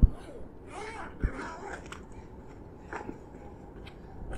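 Zipper around the fabric lid of a Solinco 180 tennis ball cart bag being pulled open in short scratchy runs, with a thump at the start and another about a second in.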